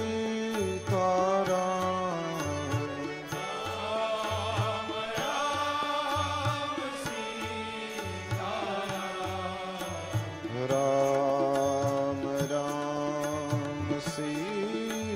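Indian devotional music: a held, wavering melody over a steady low drumbeat.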